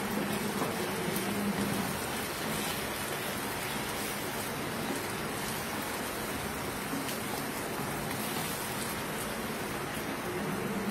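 Chicken pieces sizzling in hot oil in a wok, a steady crackling hiss, with the odd faint scrape of a wooden spatula as the pieces are stirred.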